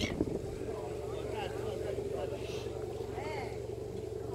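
A steady low engine drone, with faint voices heard over it now and then.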